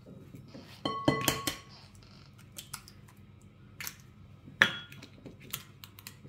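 Light knocks on a glass mixing bowl as eggs are cracked into it, each clink ringing briefly like glass: a cluster of them about a second in, then one louder clink later.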